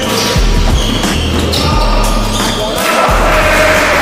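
Basketball bouncing on a wooden gym floor during play, with voices, under a music track.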